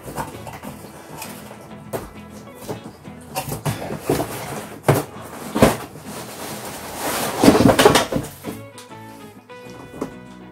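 Cardboard box and packaging rustling and knocking as the parts of a pedestal fan are lifted out of the box, over background music. The loudest rustles and knocks come about halfway through and again a little later.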